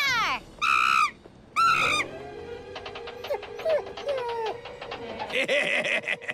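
Two short, high-pitched cries from a cartoon monkey in the first two seconds, followed by cartoon background music with a brief noisy burst near the end.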